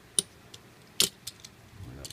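Hard plastic parts of a Transformers Chromia action figure clicking as they are pulled loose and folded by hand during transformation: two sharp clicks, one just after the start and one about a second in, with a few fainter ticks between.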